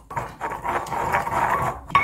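Wooden pestle grinding wet home-made doenjang (soybean paste) round a grooved ceramic mortar, a continuous rough scraping as the whole soybeans in the paste are crushed so no lumps remain.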